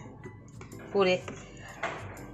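Light clatter of plastic containers being handled, with one short word spoken by a woman about a second in.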